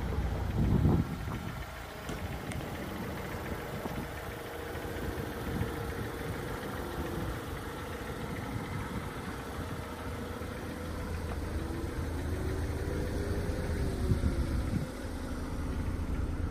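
The 2.4-litre Tigershark four-cylinder of a 2018 Jeep Renegade Trailhawk idling steadily, heard from outside the car.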